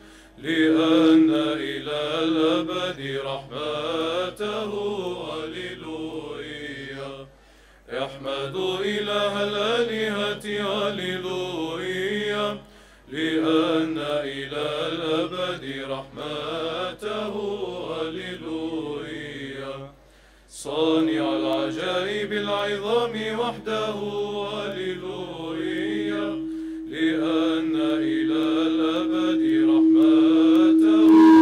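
Byzantine chant sung by a male choir of Orthodox chanters: a melodic line over a steady held low note (the ison), in about five phrases broken by short breaths.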